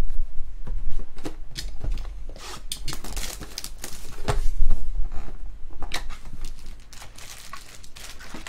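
A cardboard trading-card hobby box being torn open, then its foil card packs crinkling and rustling as they are pulled out, with scattered sharp taps and clicks from the handling.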